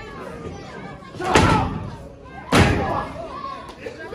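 Two loud impacts in a wrestling ring, about a second and a half apart, each ringing out in the hall's echo: hits or bodies landing in a pro wrestling match.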